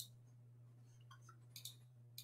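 Near silence: room tone with a low steady hum and a few faint clicks, one at the start and two more near the end.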